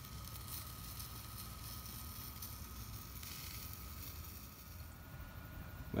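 Wood fire burning steadily in a BioLite camp stove, a faint, even sound, with a thin steady high whine running through it.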